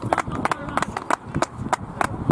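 Irregular sharp hand claps from a few people, about five or six a second, over voices in the background.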